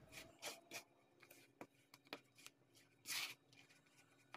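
Faint scraping of a spatula stirring flour into a yeast mixture in a plastic bowl: a few soft, short scrapes, the longest about three seconds in, over near silence.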